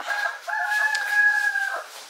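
A rooster crowing once: a short opening note, then one long held note lasting over a second.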